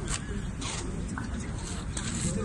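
Handling and clothing rustle on a handheld phone microphone carried while walking, a few short swishes over a steady low rumble, with faint voices behind.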